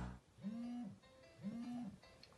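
Smartphone alarm going off: a short, low, fairly faint tone that swells, holds for about half a second and fades, repeating once a second, twice here. Music fades out in the first moment.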